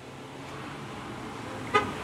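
Road traffic noise growing steadily louder as a vehicle approaches, with one short car-horn toot near the end.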